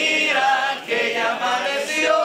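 A group of people singing together, several voices at once.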